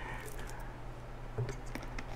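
Quiet room tone with a low steady hum, and two faint clicks about one and a half seconds in from a glass cordial bottle being handled.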